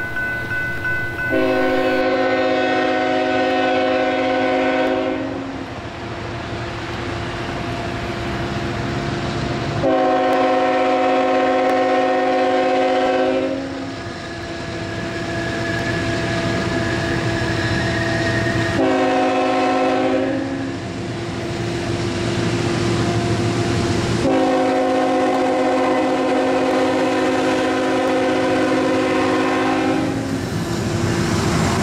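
Norfolk Southern Tier 4 GE diesel locomotive's multi-chime air horn sounding the grade-crossing signal: long, long, short, long. Under it the locomotive's engine rumbles, growing as the train nears the crossing.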